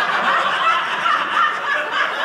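A comedy audience laughing together at a punchline in one steady, loud wave of laughter.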